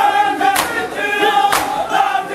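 Men singing a nauha lament in unison while beating their bare chests with their hands together, one loud slap about every second.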